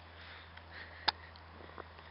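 Faint steady background hiss with a low hum, broken by a single short click about a second in and a fainter one near the end.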